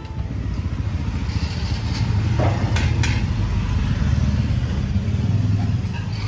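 Steady low rumble of street traffic, with motorbikes running, and a few faint clicks about two and a half to three seconds in.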